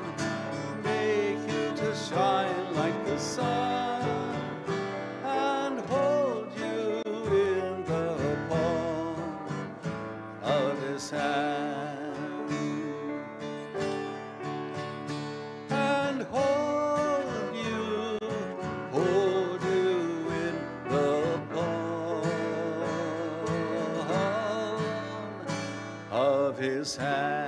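Live acoustic music: a guitar played with a sustained, wavering melody line over it.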